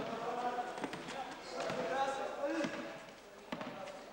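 A basketball being dribbled on a sports-hall floor, irregular bounces, with indistinct voices from players or onlookers in the hall.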